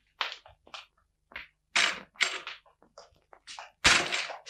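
Footsteps and scuffling on a hard floor: a string of short, irregular knocks and scuffs, with one louder sharp knock near the end.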